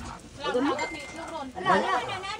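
A woman's voice laughing and calling out without clear words, in two bursts with sliding pitch, the second near the end the louder. A brief thin high tone sounds in the middle.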